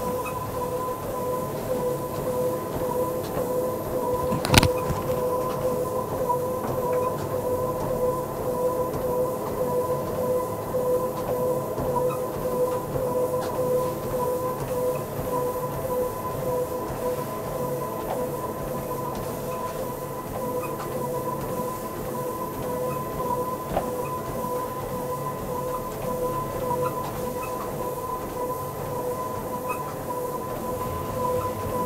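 Treadmill running under a walking patient during a stress test, its motor and belt giving a steady whine. A single sharp click sounds about four and a half seconds in.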